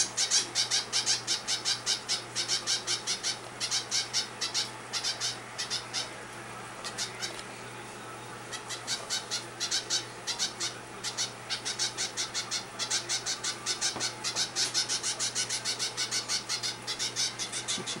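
A hand-fed zebra finch fledgling giving rapid, repeated high begging calls, several a second, in runs broken by a pause of a couple of seconds about a third of the way in.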